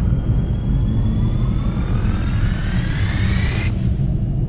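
Cinematic trailer music building tension: a deep, steady drone under thin tones that slowly rise in pitch, the rising tones stopping shortly before the end.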